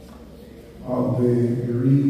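A man's voice speaking into a microphone in a drawn-out, sing-song preaching cadence, starting just under a second in.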